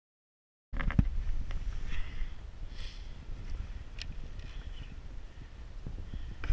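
Silent for a moment, then wind buffeting the camera microphone in a steady low rumble, with scattered clicks and footsteps in sand.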